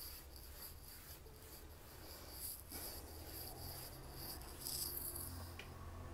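Faint scratchy rubbing of a paintbrush stroking paint across a painted board, over a low steady hum.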